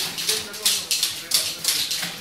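Manual typewriters being typed on: keys striking in a quick, irregular clatter of about four or five clicks a second.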